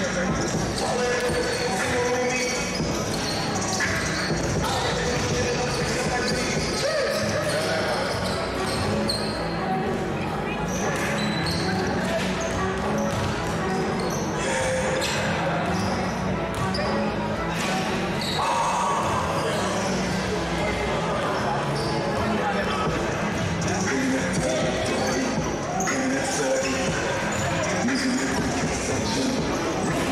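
Basketballs bouncing on a hardwood court, mixed with indistinct chatter from players and spectators, echoing in a large sports hall.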